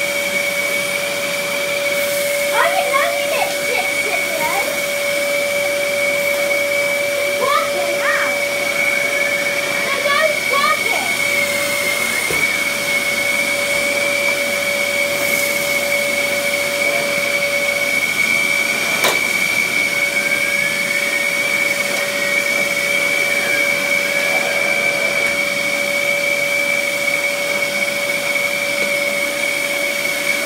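Dyson DC11 cylinder vacuum cleaner running steadily with a constant high whine over its rush of air, its turbo brush head pushed back and forth across a carpet rug. A single sharp click about two-thirds of the way through.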